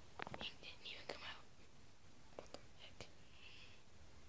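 A person whispering quietly in two short stretches, with a few sharp clicks in between.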